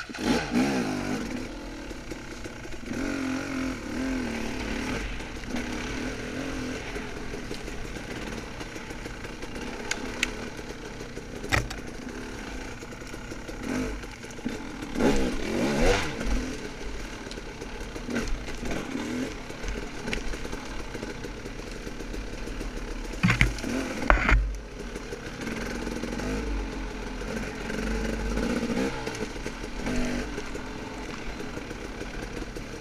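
Dirt bike engine running and revving as the bike is ridden over a rough, leaf-covered woods trail. Sharp knocks of the bike hitting rough ground come about a third of the way in and in a short cluster past three-quarters.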